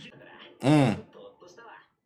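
A man's short vocal sound, rising then falling in pitch, about half a second in, over faint dialogue.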